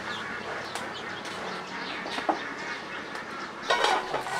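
Outdoor ambience of birds chirping and poultry calling, with a few light clicks. A louder call from a duck or other fowl comes near the end.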